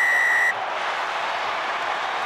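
Referee's whistle blown once, a steady blast of about half a second right at the start, signalling the try. Stadium crowd cheering underneath.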